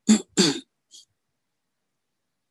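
A person clearing their throat: two quick, harsh bursts close together, followed by a faint short hiss about a second in.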